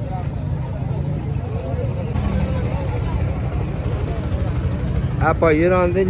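Background chatter of many voices over a steady low rumble, with a man's voice starting up close near the end.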